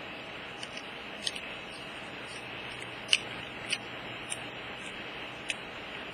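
Light clicks and taps from fingers handling the parts of a disassembled tablet, about eight of them spread irregularly with the loudest about three seconds in, over a steady hiss.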